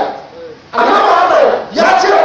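A man's loud, impassioned preaching voice through a microphone, in drawn-out phrases: a pause in the first moment, then a long phrase, a short break, and a new phrase starting near the end.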